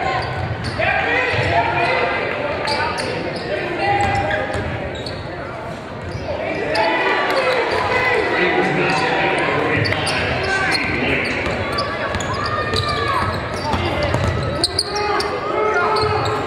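Live basketball game in a gymnasium: players and spectators calling and shouting over one another in a reverberant hall, with a basketball bouncing on the hardwood court.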